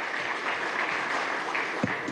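Audience applauding: steady clapping from a crowd.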